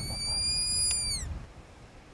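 Fox call blown in a long, steady high-pitched whistle that falls in pitch and stops about a second and a half in. A faint click comes partway through.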